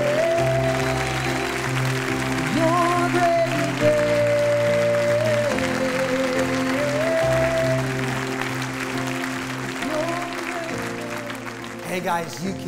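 Live worship song: a singer holds a slow melody with vibrato over sustained chords that change every few seconds, with applause from the congregation underneath.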